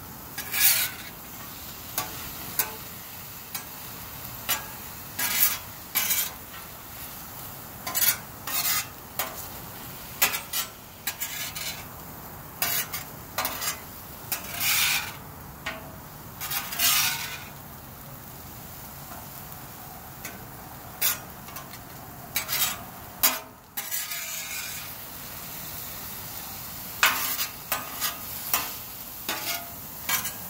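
Food sizzling steadily on a steel Blackstone flat-top griddle while a metal spatula scrapes and turns it, giving many short, irregular scraping strokes against the hot plate.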